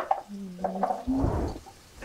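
Cubes of raw butternut squash tipped from a bowl into a pot, a short dull tumble about a second in, after a click at the start. A woman's voice holds a drawn-out sound just before it.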